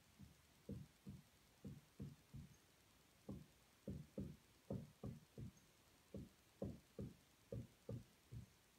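Dry-erase marker drawing quick short strokes on a whiteboard: a faint string of brief taps and rubs, many coming in close pairs.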